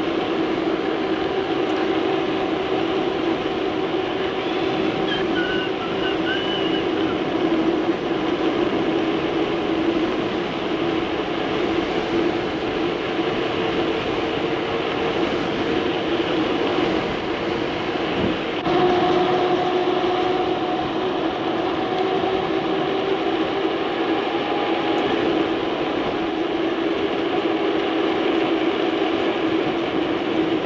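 Mountain bike rolling quickly on asphalt: a steady drone of knobby tyres humming on the road, mixed with wind on the microphone. A single knock comes a little past the middle, and the hum changes pitch after it.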